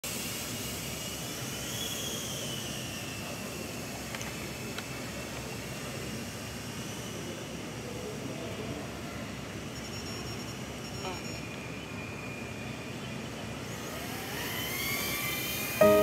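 Steady hangar background rush with faint voices. Near the end, a rising whine as an OddityRC XI25 Pro FPV quadcopter's motors spool up for takeoff.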